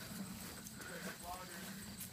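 Faint footsteps walking through grass, with faint voices in the background.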